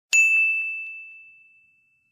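A single high, bell-like ding sound effect, struck once just after the start and fading away over about a second and a half.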